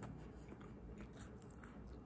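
Faint close-up biting and chewing of a baked egg tart, with a few short crisp clicks from the pastry scattered through the chewing.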